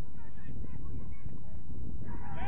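Wind rumbling on an outdoor camera microphone, with faint distant shouts from players on the pitch.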